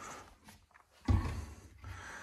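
A kitchen cabinet door being opened and handled, with a single dull thump about a second in.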